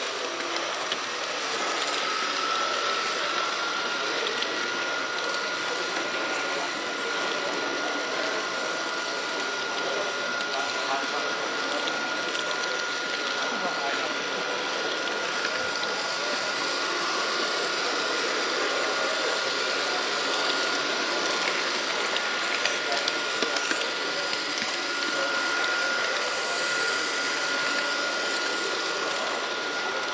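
H0-scale model train running along the layout track: a steady whir of its small electric motor, gears and wheels on the rails, with a thin whine that rises slightly in pitch over the first few seconds as it picks up speed, then holds steady. Hall chatter sits underneath.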